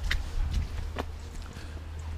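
Footsteps going down wet stone steps: a few separate scuffs and taps about a second apart, over a steady low rumble.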